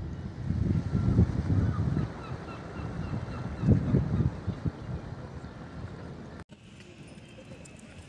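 Wind buffeting the microphone in low, gusty rumbles, loudest twice, over faint outdoor ambience. It cuts off abruptly about six and a half seconds in, leaving a quieter background with a few faint clicks.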